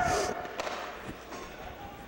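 Ice hockey arena ambience: a faint, even wash of noise with a few soft knocks, fading over the first second.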